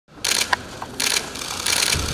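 Camera shutters firing in short rapid bursts, three bursts each a fraction of a second long, about one every 0.7 s.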